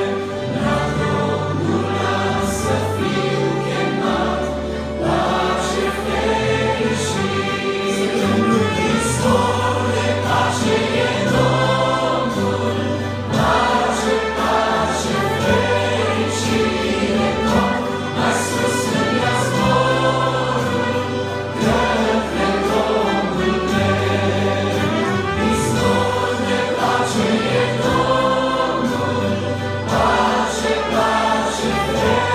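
Small mixed vocal group singing a hymn in Romanian, accompanied by accordion and trumpet over a steady bass line.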